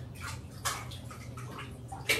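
Bathwater splashing in a tub in several short bursts, the loudest a little over half a second in, over a steady low hum.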